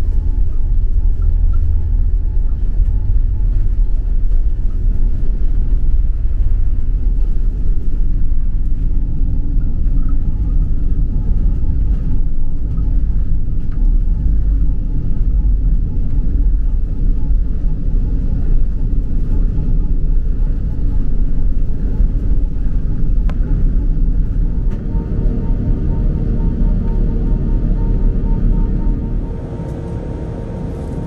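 Airbus A380 take-off heard from inside the cabin: a loud, steady low rumble of the four engines at take-off thrust and the roll down the runway, carrying on into the climb. The rumble eases noticeably near the end.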